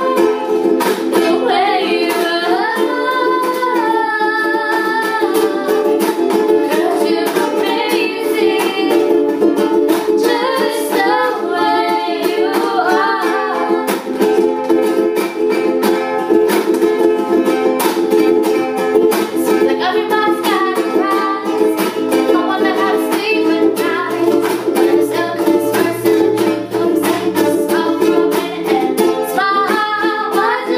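Three ukuleles strummed together in steady, even chords while young girls sing the melody over them.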